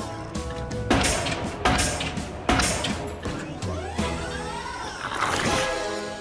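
Cartoon pile driver hammering a wooden post into the ground: three heavy thuds about a second apart in the first half, over background music.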